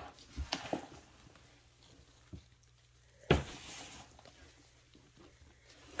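A gloved hand rustling through moist worm-bin compost and shredded cardboard bedding: a few soft rustles in the first second, then a sharper crackle a little past three seconds with a brief rustle after it.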